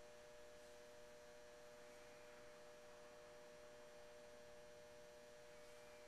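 Near silence with a faint, steady hum of two held tones.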